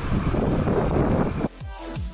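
Wind buffeting the microphone, cut off suddenly about one and a half seconds in by electronic dance music with a deep, pitch-dropping kick drum about three beats a second.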